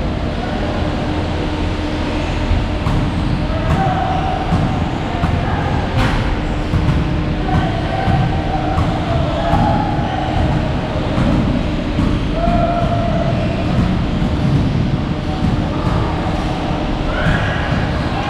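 A loud, steady machine-like rumble, with short faint pitched sounds rising over it every few seconds and a single sharp click about six seconds in.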